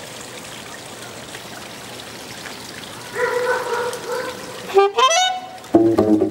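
Steady background noise, then a saxophone enters about halfway through with a held note and, near the end, a quick rising run. Plucked double bass notes come in just before the end.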